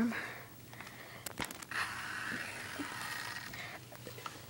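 Handling noise from plastic Nerf gun parts being moved around: a few quick clicks about a second and a half in, then a steady rustling hiss.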